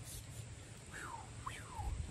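Two faint whistled calls, each sliding down in pitch, the second opening with a quick upward flick, over a low rumble.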